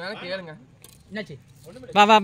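Voices talking in short phrases, with a few faint clinks in between.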